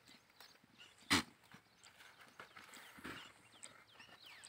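Goat browsing in a leafy bush, with leaves rustling and one sharp crack about a second in.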